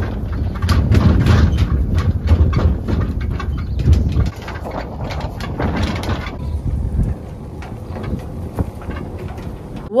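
Farm ute towing a grain feeding trailer over a bumpy paddock: a low rumble with many small rattles and knocks. The rumble drops away about four seconds in.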